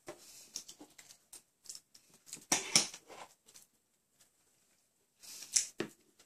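Irregular light clicks and scrapes of a fork against a plate as food is picked at, with a cluster of louder clicks about two and a half seconds in and another near the end.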